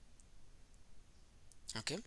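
A quiet pause with three faint, short clicks spread over about a second and a half, then a man says "Okay" near the end.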